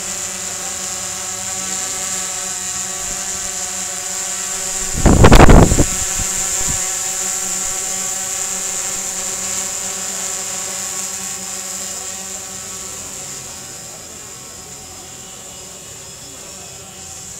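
A steady motor hum with a high whine above it, broken by a loud burst of noise about five seconds in, and easing off over the last few seconds.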